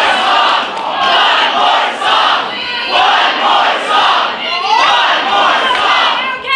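A group of young people shouting and cheering together in loud swells about once a second, with one rising whoop a little past the middle.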